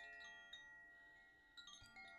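Faint chimes ringing and slowly dying away, with a few soft new strikes near the end.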